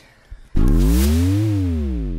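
Synthesized electronic logo stinger: a sudden loud hit about half a second in, then a low synth tone that sweeps up and back down under a fading wash of noise.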